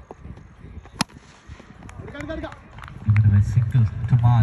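A single sharp crack of a cricket bat striking a tennis ball about a second in, followed by voices near the end.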